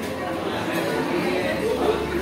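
Indistinct background chatter of many voices in a busy indoor dining room, with no single clear speaker.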